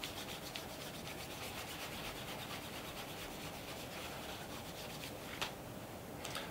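A cotton chamois wrapped over the fingertips rubs in small circles over the wax-polished leather toe of a shoe. The chamois is dampened with water and a little wax polish to glaze a mirror shine. The result is a faint, even rubbing made of quick repeated strokes, with a single light tap about five seconds in.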